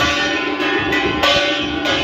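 Temple bells ringing in a steady beat, about one strike every half second or so, over continuous music.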